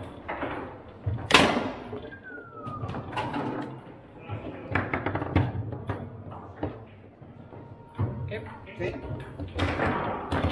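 Foosball rally: the hard ball clacking off the plastic players and the table walls, with rods knocking against their stops. One sharp, loud crack comes a little over a second in, and a short falling squeak follows about two seconds in.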